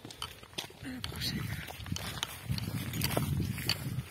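Footsteps on a dry, stony trail through grass and scrub, with irregular crunches and clicks and the rustle of clothing and gear as the walkers move along.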